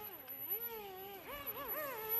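The twin small brushed motors and propellers of an XK A100 J-11 RC foam jet whining, their pitch wavering up and down. The six-axis gyro is speeding up and slowing each motor in turn, using differential thrust to correct the plane's attitude.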